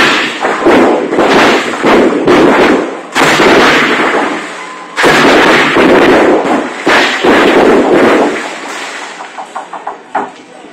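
A troupe's large hand cymbals crashed together, about six loud clashes in the first three seconds, then a few slower ones each ringing out for a second or more.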